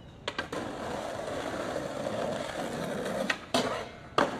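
Skateboard wheels rolling on pavement, a steady rumble that builds slightly, with two sharp clacks of the board about a third of a second in and two louder clacks a little after three seconds in, when the rolling stops.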